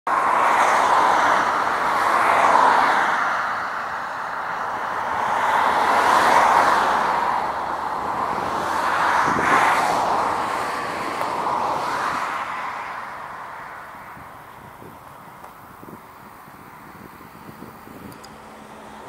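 Road traffic: several cars pass one after another on a country road, their tyre noise swelling and fading in turn, then dying down to a quieter hush over the last few seconds.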